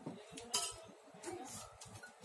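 A small steel bowl clinks against a wooden table: one sharp clink about a quarter of the way in and a lighter knock later, over low rustling.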